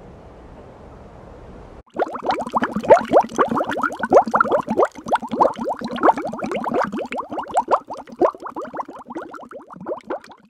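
A faint steady water hiss, then about two seconds in a dense, loud run of bubbling and gurgling plops begins as the microphone goes under the river water, heard muffled from underwater.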